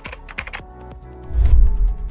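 Keyboard typing sound effect, a quick run of clicks, over intro music with a deep bass swell about one and a half seconds in.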